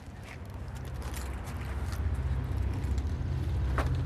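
Low, fluctuating rumble of wind buffeting the microphone, growing slowly louder, with a few faint clicks.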